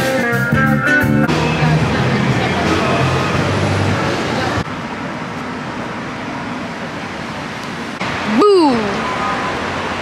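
A street band playing guitar and drums, cut off after about a second, followed by the steady noise of city street traffic. Near the end a single loud cry rises and falls in pitch for about half a second.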